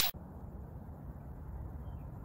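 Steady, fairly quiet outdoor background noise with a low rumble, just after the tail of a loud whoosh sound effect cuts off at the very start.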